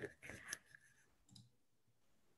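Near silence, with a few faint clicks in the first half second or so.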